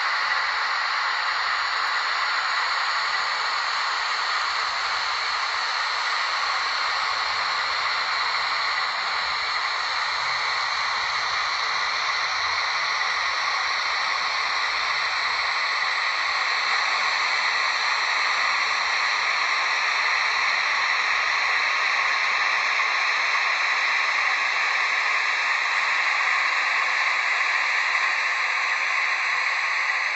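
Märklin E93 HO-scale model electric locomotive hauling coal wagons along the track: a steady hissing whir of motor and wheels on rail, slightly louder in the second half.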